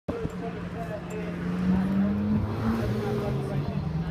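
A car engine running at idle, a steady low hum whose pitch lifts slightly about halfway through, with people talking nearby.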